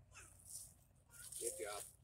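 A person's voice, faint and brief, giving two short wordless vocal sounds, the second one louder and longer.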